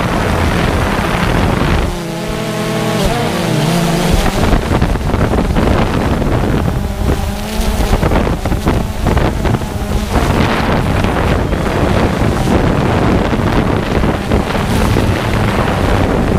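Wind buffeting the microphone, a loud steady rumble, with a faint wavering pitched tone showing through about two seconds in and again about seven seconds in.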